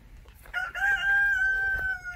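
Rooster crowing: one long, held call that starts about half a second in and keeps a nearly steady pitch.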